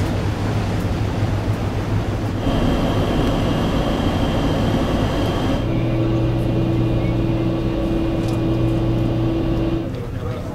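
Steady low drone of a ferry's engines and machinery heard on the open deck, with wind noise over it. The hum changes abruptly twice, about two and a half seconds in and near six seconds in, where a higher steady hum joins it.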